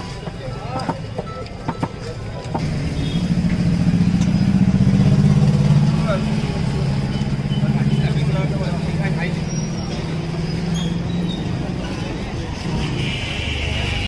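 A motor vehicle engine running close by on a busy street, coming in about two and a half seconds in, loudest a couple of seconds later and easing off near the end, over street bustle and voices. A few light knocks come before it.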